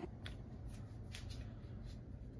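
Faint, scattered clicks and light rustles from a small skincare sample container being handled and opened, over a steady low rumble.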